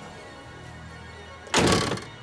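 Faint background music, then about a second and a half in, the Lexus LS430's hood is slammed shut with one loud thud.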